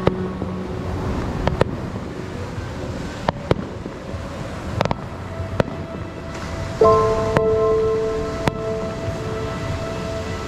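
Fireworks going off, a scattering of single sharp bangs a second or so apart, over a steady wash of surf and wind. Soft, held music notes come in about seven seconds in.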